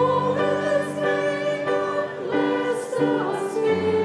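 Church congregation singing a hymn together, long held notes moving from one to the next about once a second.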